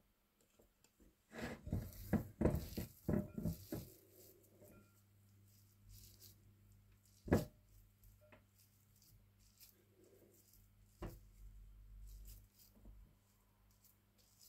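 Handling noises at a gas hob: a couple of seconds of light knocks and rustles, then a faint steady low hum broken by two single sharp clicks.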